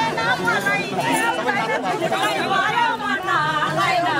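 Many voices in a close crowd talking and calling out over one another, with no break.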